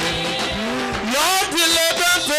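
Live gospel band music with a steady beat, and a man's voice on a microphone sliding upward about half a second in and carrying on into a wavering, sung phrase.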